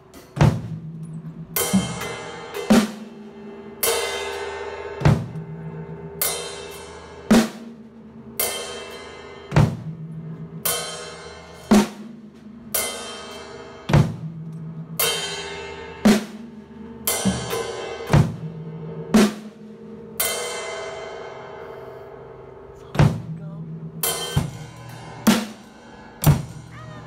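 Acoustic drum kit with Sabian cymbals played at a slow, steady pulse of about one stroke a second. A cymbal crash rings out and fades on about every second stroke, with drum hits between. There is a pause of a couple of seconds near the end.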